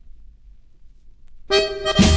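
A quiet gap between tracks on a vinyl LP with only a faint low rumble, then about one and a half seconds in a polka band starts with an accordion chord, the band coming in fuller right at the end.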